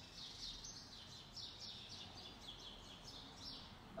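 Faint birdsong: a bird chirping in a quick run of short high notes, about four a second.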